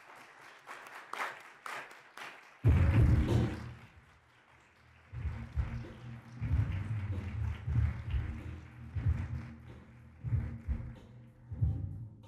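Audience clapping, then about two and a half seconds in a DJ's music starts abruptly with a loud, heavy bass beat that repeats through the rest.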